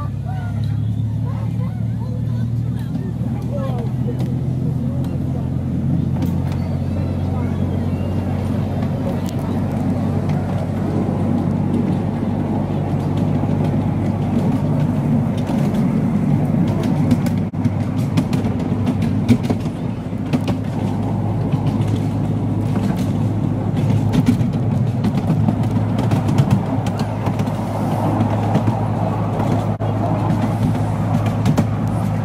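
Engine of the miniature railway locomotive Alan Keef No. 54 "Densil" running steadily under load while hauling the train, heard from a passenger carriage, with scattered short clicks from the moving train.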